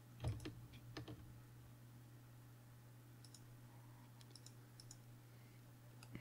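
A few computer mouse clicks over a low steady hum, otherwise near silence: two clearer clicks about a third of a second and a second in, then a few faint ticks around the middle.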